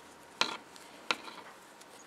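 Two short, sharp clicks about two-thirds of a second apart from a metal crochet hook as it is worked through a stitch, followed by fainter small ticks.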